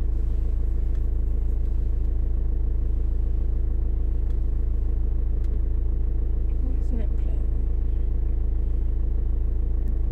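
Car engine idling, a steady low rumble heard inside the cabin while the car stands still.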